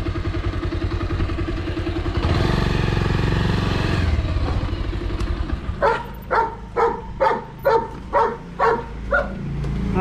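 Motorcycle engine running steadily, then louder for a couple of seconds as it pulls forward. In the second half a dog barks about eight times in quick succession, roughly two barks a second, over the engine.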